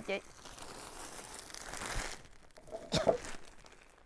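Plastic garment bags crinkling as packaged clothing sets are picked up and handled, loudest about two seconds in, with a brief sharper sound about three seconds in.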